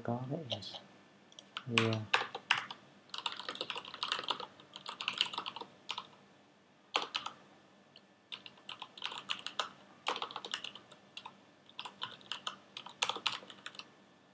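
Typing on a computer keyboard: quick, irregular runs of keystrokes with short pauses between them, as a line of code is entered.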